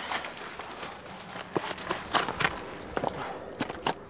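Footsteps: a run of irregular scuffs and knocks.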